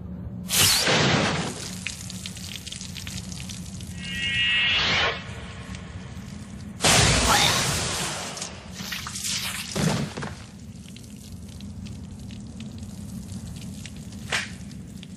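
Animated-film fight sound effects: a series of sudden whooshes and heavy hits over a low steady drone, with a ringing tone that rises about four seconds in and a loud impact near the middle.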